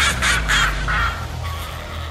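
Radio jingle sound effects: several short, loud sounds in the first second over a low bass drone, which then fades away.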